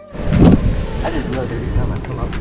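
Voices talking over background music, with a small RC crawler truck running over rock, its electric motor and drivetrain going under the voices and sharp clicks of tyres and chassis on stone.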